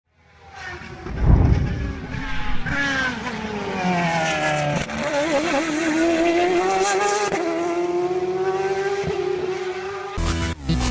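Race car engine at high revs: the pitch drops over the first few seconds, wavers briefly near the middle, then holds steady. It fades in from silence, with a low thump about a second in.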